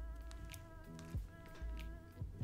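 Quiet background music: a sustained, buzzy chord over low bass notes that change a few times.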